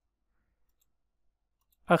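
A few faint computer clicks in near quiet, then a man's voice begins speaking right at the end.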